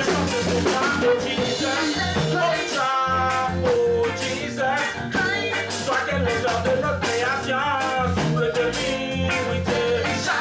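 Reggae song with singing over bass, electric guitar and drum kit, keeping a steady beat.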